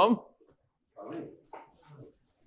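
A man's question ending on a close microphone, then a faint, distant voice answering in a few short words from across the room, off-microphone.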